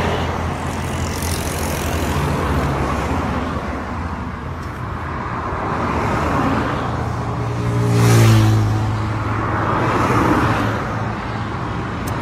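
Road traffic passing close by, a steady rush of tyres and engines rising and falling as vehicles go past. About eight seconds in, the loudest vehicle passes, its engine hum dropping in pitch as it goes by.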